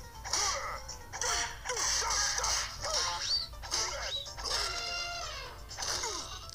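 Cartoon film soundtrack of a scuffle, played through a TV speaker: music with a rapid string of short falling squeaks and cries, two quick rising whistles midway, and a held many-toned note near the end.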